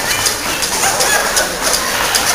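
Audience applauding in a hall, many scattered claps with voices and cheers mixed in.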